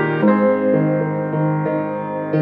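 Acoustic grand piano being played, with new notes struck about every half second and ringing on over one another. It is recorded on a 5th-generation iPod touch's built-in microphone.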